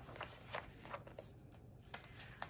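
Faint crackles of thick magazine paper as the pages are handled and a page is turned, several short rustles spread through.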